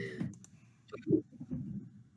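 A few sharp computer mouse clicks, spread across the two seconds, as an image is copied and pasted.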